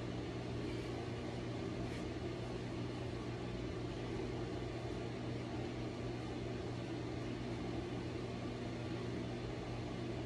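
Steady low room hum with a faint hiss behind it, unchanging, with no knocks or clanks from the dumbbells.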